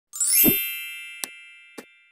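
Logo sting sound effect: a bright rising chime swell that lands on a low thump about half a second in and rings out slowly, followed by two short clicks.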